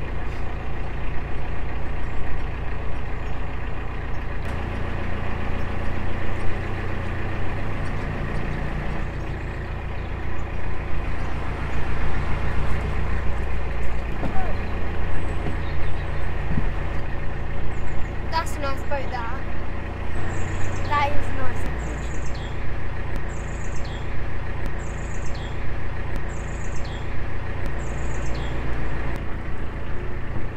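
A narrowboat's diesel engine running steadily at cruising speed, a low even drone whose pitch shifts slightly a few times.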